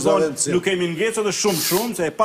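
A man talking continuously, with a short hiss near the end.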